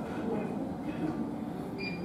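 Busy indoor ambience: a steady low rumble under indistinct chatter from several voices, with a short high beep near the end.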